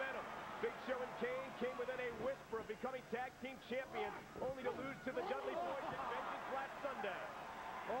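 Men's voices talking and shouting throughout over steady arena crowd noise, with no single impact standing out.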